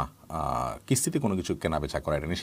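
A man speaking, with a short pause just after the start and a drawn-out held syllable before the talk picks up again.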